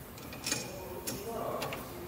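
Light metallic clicks and taps from lathe parts being handled, three sharp ones a little over half a second apart.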